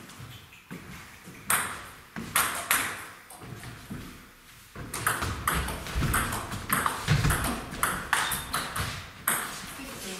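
Table tennis rally: the celluloid ball ticking sharply off bats and the table in a quick run from about five seconds in until just past nine seconds. A few single ticks come in the first three seconds.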